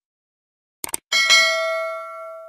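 A quick double mouse-click, then a bright notification-bell chime with several ringing tones that slowly fades. These are the sound effects of the subscribe animation, with a cursor clicking the notification bell.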